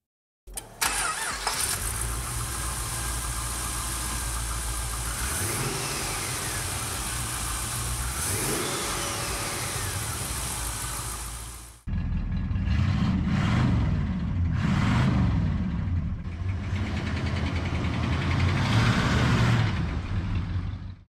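A Studebaker's V8 engine running, with its pitch rising and falling a few times as it is revved. About twelve seconds in, a cut brings in a louder V8 car engine running and revving unevenly.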